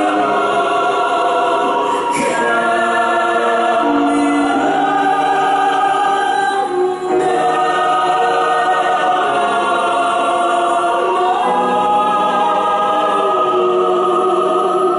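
Mixed choir singing slow, sustained chords that move to a new chord every few seconds.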